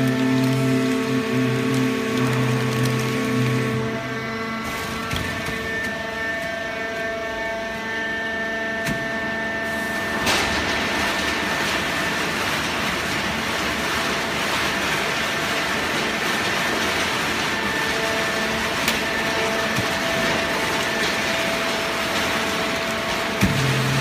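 Fully automatic horizontal hydraulic cardboard baler running: a steady hum and whine of several held tones, which shift about four seconds in, then a steady hiss-like machine noise from about ten seconds in.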